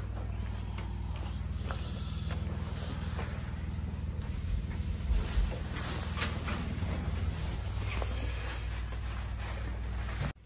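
A steady low mechanical hum, like a running motor, with scattered light clicks and rustles from handling and footsteps.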